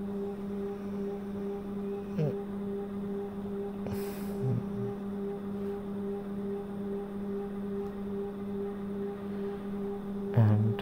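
A steady low drone on one unchanging pitch with an overtone an octave above it. A short hiss comes about four seconds in.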